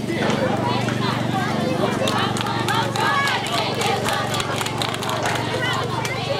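Many young girls' voices chattering and calling out over one another, with scattered sharp clicks and a steady low hum underneath.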